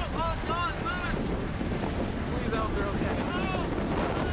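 Strong wind rumbling and buffeting the microphone close to a violent tornado, with people's voices crying out in short rising-and-falling calls near the start and again around the middle.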